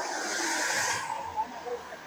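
A car passing on the road: tyre and road noise that swells and then fades away within the first second and a half.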